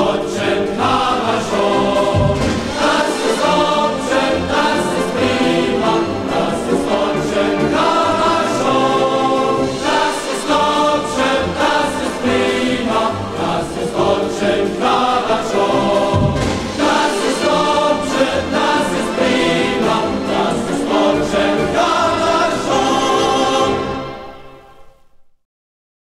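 Choir singing with instrumental accompaniment: the closing stretch of an East German soldiers' song from an old vinyl record.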